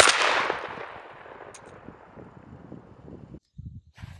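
A single shot from a Mossberg 930 12-gauge semi-automatic shotgun firing a 3-inch Federal Heavyweight TSS turkey load, a sharp report followed by an echo that dies away over about a second and a half. The sound cuts off abruptly about three and a half seconds in.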